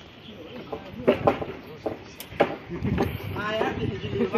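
People talking and calling out, with several sharp knocks between about one and two and a half seconds in.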